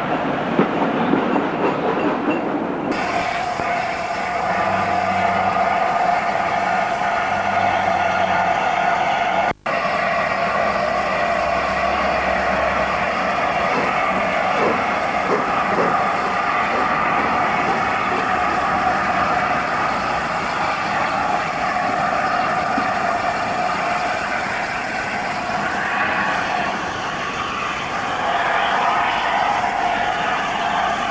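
LNER A4 Pacific steam locomotive 60009, a three-cylinder 4-6-2, running past with its coaches: a steady train sound on the rails. The sound changes abruptly about three seconds in and drops out briefly before ten seconds, where the footage is cut.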